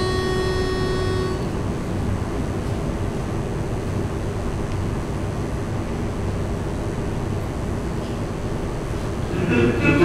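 A single held starting note for about the first second and a half, then a steady low rumble of hall noise while the choir waits; male voices begin singing near the end.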